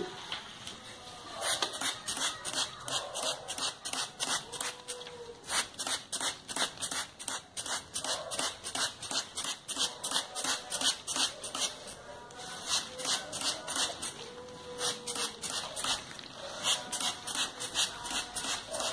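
Plastic trigger spray bottle misting water onto anthurium leaves, squeezed over and over at about three sprays a second, each a short hiss. There is a short break about twelve seconds in before the spraying goes on.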